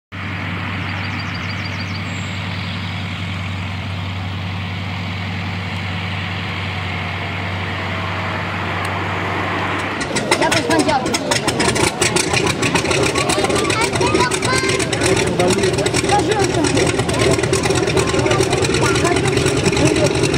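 A steady low engine-like hum under outdoor noise. About halfway through, it gives way to louder, busier sound with voices and rapid clicking.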